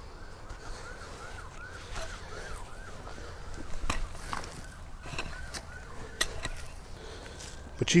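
Pickaxe knocking and scraping in loose soil as earth is pulled back into a hole, with scattered thuds of dirt; the strongest strokes come about midway. A faint chirping tone repeats about three times a second in two runs behind it.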